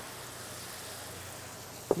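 Ground beef and vegetables sizzling in a skillet on an induction cooktop, a steady hiss.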